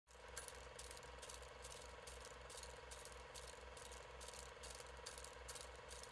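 Faint, even mechanical ticking, a little over two ticks a second, over a low pulsing hum.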